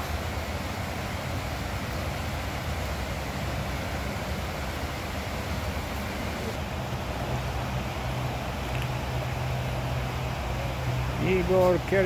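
A pickup truck's engine running with a steady low hum as it drives slowly through shallow floodwater toward the microphone; a steadier low tone joins about seven seconds in as it comes closer. A voice speaks briefly near the end.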